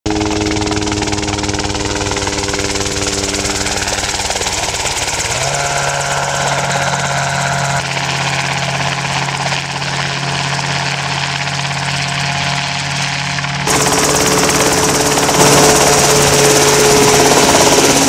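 Small light helicopter's engine and rotor running steadily as it flies in and hovers, heard in several abruptly joined stretches, louder in the last few seconds as it comes close overhead.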